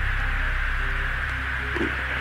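Steady hiss and low hum of a Navy fighter jet's cockpit radio and intercom recording, with a few faint short tones.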